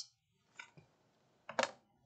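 Faint handling sounds of a plastic quilting ruler being picked up and laid on a rotary cutting mat, with light clicks in a mostly quiet pause. A brief vocal sound comes about one and a half seconds in.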